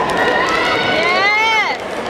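A person's long drawn-out shout, rising in pitch then falling off sharply, over the steady hubbub of a crowd in a gym.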